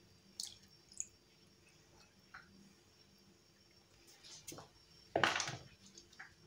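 Last trickle and drips of fish stock poured from a small glass bowl over hake fillets in a glass baking dish, with a few faint ticks in the first seconds. A brief, louder noise comes about five seconds in.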